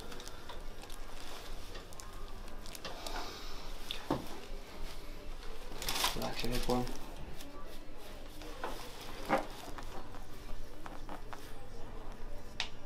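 Soft handling noise as hands shift over the patient: rustling of clothing and the treatment table's paper headrest cover, with a few light clicks and a short stretch of low voice about halfway through.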